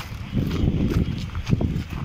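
Footsteps and handling of a handheld camera carried over rock, heard as an irregular low rumble with a few thuds that starts about a third of a second in.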